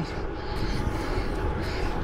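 Steady riding noise from a gravel bike rolling along a concrete path: tyre hum mixed with wind rushing over the camera microphone, with a strong low rumble.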